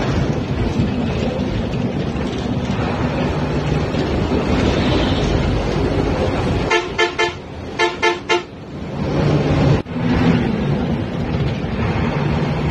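Steady engine and road noise inside a moving bus. About two-thirds of the way through, a horn sounds in two quick sets of three short toots.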